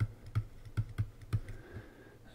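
Stylus tip clicking and tapping on a drawing tablet as words are handwritten: a string of light clicks about three a second that stops shortly before the end.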